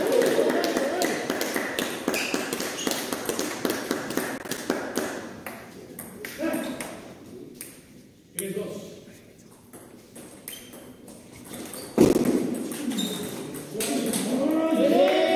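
Table tennis ball knocking sharply off bats and table in a string of short clicks, with voices talking in the background. It quietens in the middle, and a loud knock comes about twelve seconds in.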